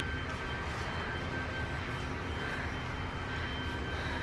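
Steady low rumble of outdoor background noise, with no distinct knocks or cuts.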